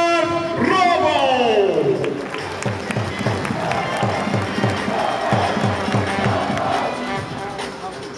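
Stadium PA announcer drawing out a forward's name over the loudspeakers, the voice sliding down and fading by about two seconds in. After that comes music with a steady beat of about three a second mixed with crowd voices.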